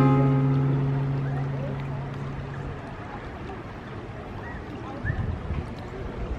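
The last note of the background music, a plucked-string chord, rings out and fades away over the first three seconds. Under and after it comes the steady rush of a shallow creek running over rocks, with a brief low rumble about five seconds in.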